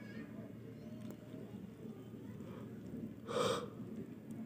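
Faint room noise, then one short audible breath from a person about three and a half seconds in.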